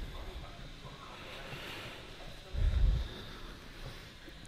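Faint room noise with a single low, muffled thump lasting about half a second, a little past the middle.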